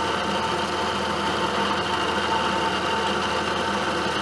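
Milling machine running a carbide end mill through a metal block, a steady machining whir with a constant tone. It is a light cleanup pass of about ten thousandths on the side walls.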